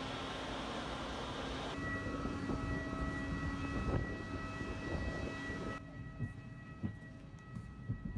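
Steady, even whine of a parked jet airliner on the apron, several high tones held over a low rumble. It follows a steady ambient noise and gives way about six seconds in to the quieter hush of the aircraft cabin, with a few small clicks.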